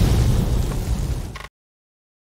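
Explosion sound effect on a title card: the deep rumbling tail of a boom, fading over about a second and a half and then cut off abruptly into dead silence.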